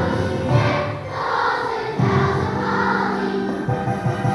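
Large children's choir singing together in sustained, held notes.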